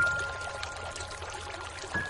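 Slow, sparse piano music over a steady hiss of rain. A single high note is struck at the start and rings on, and another comes near the end.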